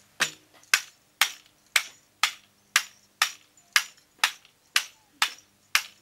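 Rabha bamboo rhythm instrument, the baghanguru, a bamboo tube fitted with small bells, struck in a steady even beat of about two sharp strokes a second.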